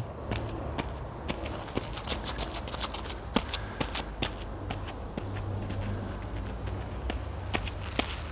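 Footfalls of athletes bounding up a sandy path, a run of short, irregular scuffs and thuds. A faint steady low hum joins about five seconds in.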